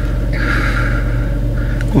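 Car engine idling, heard from inside the cabin as a steady low hum, with a soft rushing noise lasting about a second in the middle.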